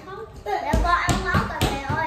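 A quick, uneven run of about five sharp smacks over about a second, starting near the middle, amid people talking.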